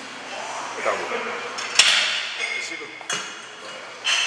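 Two metallic clanks from a cable crossover machine as a set of cable pullovers ends at failure and the bar and weight stack come to rest: a loud ringing clank just before the midpoint, then a lighter one about a second later. Before the clanks there is a strained grunt from the lifter.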